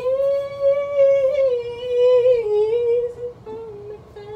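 A woman singing a wordless melody: one long held note that slides slowly down in pitch, then a few shorter, quieter notes near the end.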